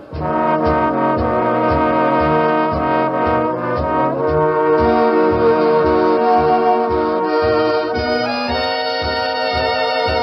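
Swing big band playing an instrumental passage led by trombones and trumpets over a steady beat. It comes back in at full strength after a brief break right at the start. The sound is from an old live radio broadcast recording, with the top end cut off.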